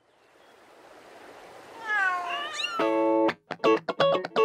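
A swelling whoosh, then several overlapping cartoon kitten meows about two seconds in. A few moments later a loud guitar chord and choppy plucked guitar notes begin.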